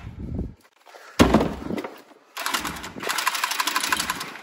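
Milwaukee cordless copper tubing cutter running in three bursts as it cuts through a copper water pipe, with a fast rattling buzz; a short burst, then two longer runs from about a second in, with brief stops between.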